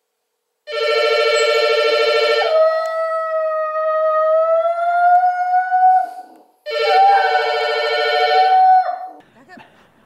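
A wall-mounted telephone rings twice with a buzzy, trilling ring, and a black poodle howls along after each ring, one long howl that rises slightly in pitch and is held for about three seconds, then a shorter one during and after the second ring.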